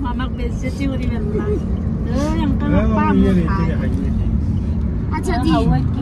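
Steady low road and engine rumble inside a moving car's cabin, with voices talking over it in the middle and again near the end.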